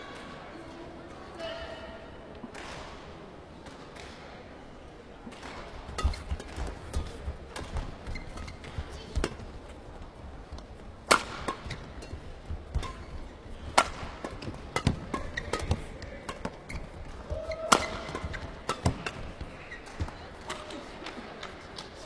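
Badminton rally in a women's doubles match: rackets striking the shuttlecock in a run of sharp, irregular hits about once a second, with players' footfalls on the court.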